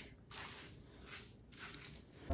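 Faint squishing and rustling of fingers working foam mousse through short wet hair, in a few short strokes.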